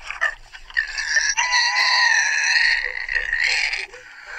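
A long, pitched call lasting about two and a half seconds, starting about a second and a half in and holding steady at one pitch. Shorter, scrappier sounds come before it.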